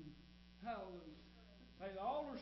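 Steady electrical mains hum on the church sound system, with short faint snatches of a voice about half a second in and again near the end.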